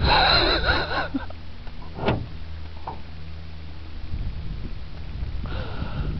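A man retching over the side of a boat, sick from drink: a strained vocal heave in the first second and a shorter one near the end, with a low steady hum under the first few seconds.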